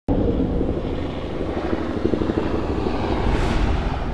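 Helicopter sound effect: rotor chop and engine noise that starts abruptly and holds steady, swelling briefly near the end.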